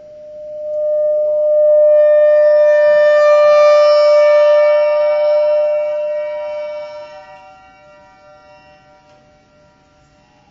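Bass clarinet holding one long, steady note. Higher tones build up over it during the first couple of seconds, making it swell to full loudness, then it slowly fades away to almost nothing near the end.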